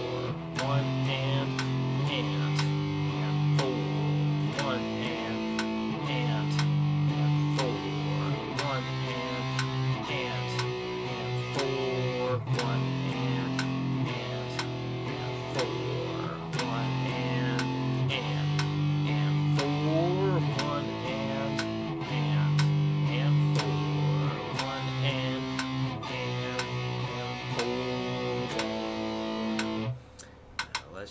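Electric guitar strumming a power-chord exercise at 60 beats a minute, the chords changing every second or two. A metronome clicks about once a second under the playing.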